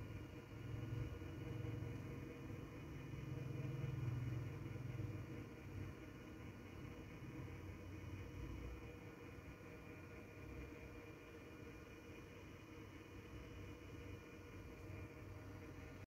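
Faint steady hum of a small motorised display turntable turning slowly, with a low rumble that swells during the first few seconds and then settles.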